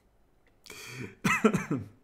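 A man coughs and clears his throat once, starting a little over half a second in: a short rasp, then a brief voiced rumble.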